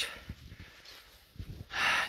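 A man's sharp intake of breath close to the microphone near the end, taken before he speaks again.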